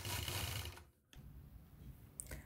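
Quilting machine stitching, running for about a second and then stopping.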